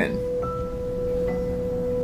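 A single held musical tone, steady in pitch, with a fainter higher tone joining about half a second in and another briefly after a second: a sustained note of background music.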